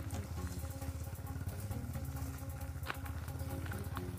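A small engine running steadily at low revs, with a fast, even pulse.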